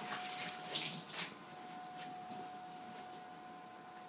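A wet string mop is lifted out of a bucket of water and set down on a wooden floor, with water splashing and dripping in a few short bursts over the first second or so before it goes quieter. A faint steady hum runs underneath.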